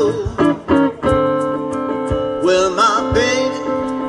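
Live blues song: a guitar playing chords with regular picked strokes, joined by a man's wavering sung vocal phrase about two and a half seconds in.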